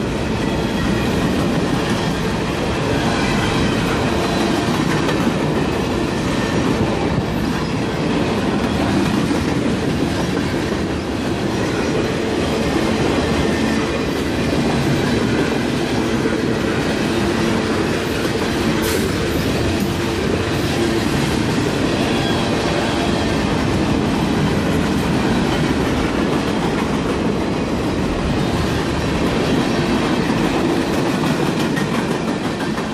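Freight train's boxcars and flatcars rolling past close by: a steady rumble of steel wheels on the rails with a rhythmic clickety-clack. A single sharp click stands out about 19 seconds in.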